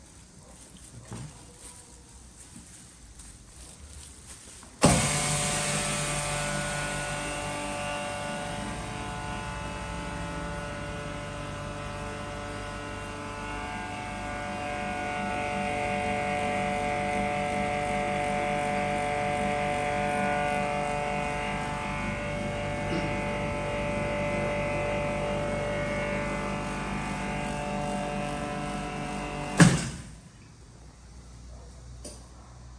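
Single-chamber vacuum packaging machine's vacuum pump starting suddenly about five seconds in and running steadily with a droning hum for about 25 seconds as it pumps the air out of the closed chamber. Near the end there is a sharp burst, then the sound cuts off.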